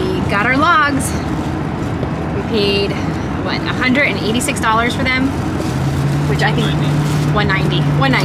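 Steady road and engine noise inside a moving van's cabin, under a woman talking. A steady low hum joins about six seconds in.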